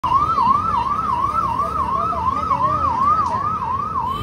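Electronic siren sounding a fast, repeating whoop: each rise in pitch snaps back down, about three times a second.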